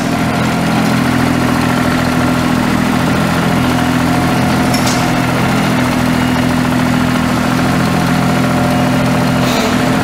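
Perkins three-cylinder diesel engine of a Toro Reelmaster 2300D greens mower idling steadily.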